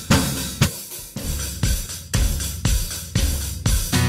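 Drum kit playing the intro of a live rock song: a steady beat of bass drum and snare, about two hits a second, with hi-hat and cymbals over the band.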